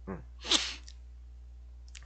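A man gives a short 'mm', then one quick, hissy breath noise about half a second in, over a steady low electrical hum.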